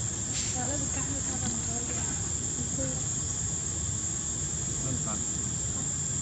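Steady high-pitched insect drone, unbroken throughout, over a constant low rumble.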